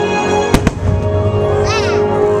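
Two firework shells bang about half a second in, a fraction of a second apart, over the fireworks show's music playing throughout.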